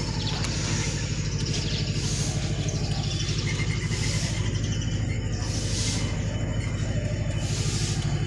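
A motorcycle engine running steadily with an even, rapid low pulse and no revving.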